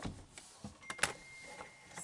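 Light clicks and rustles of handling noise, with one sharper click about a second in and a faint thin whine after it.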